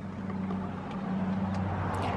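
Steady low hum of the Honda Accord's 2.4-litre four-cylinder engine idling, heard inside the cabin, with a couple of faint clicks.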